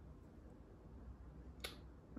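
Near silence with a low steady hum, broken once by a single sharp click near the end.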